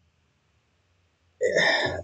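Near silence, then about a second and a half in, a man's short throaty vocal sound leading into his speech.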